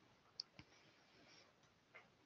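Near silence, broken by two faint short clicks about half a second in and another near the end.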